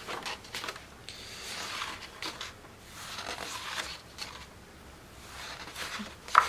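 Paper pages of a colouring book being turned by hand, with several papery swishes and rustles as the sheets are flipped and smoothed flat.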